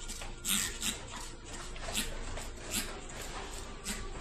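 Hand-held pump spray bottle spritzing mist in short hissing bursts, about five or six squirts, the strongest about half a second in.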